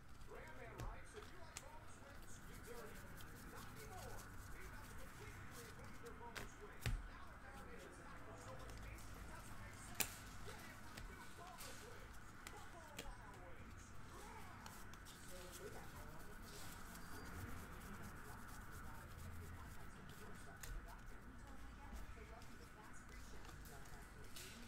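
Quiet handling of a stack of glossy trading cards, the cards sliding and flicking past one another as they are thumbed through, with two sharp clicks, one about seven seconds in and one about ten.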